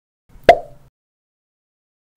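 A single short pop sound effect about half a second in, dying away within a few tenths of a second.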